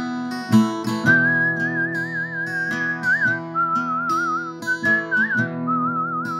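A man whistling a slow melody with a steady wavering vibrato over strummed steel-string acoustic guitar. The whistling comes in about a second in and runs in four phrases, the first the longest.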